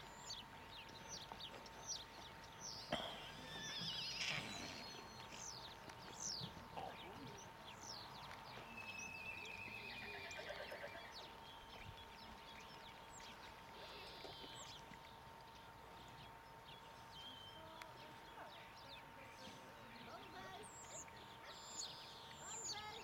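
A horse neighs once, a wavering, quavering call about nine to eleven seconds in, over faint birdsong of many short high chirps.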